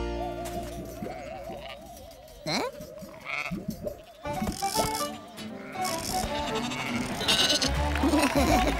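Cartoon music with comic sound effects: a warbling tone, a quick sliding pitch sweep about two and a half seconds in, and cartoon sheep bleating.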